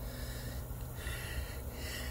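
A man breathing heavily, several audible breaths, still winded from spinning a hand drill to make a friction fire.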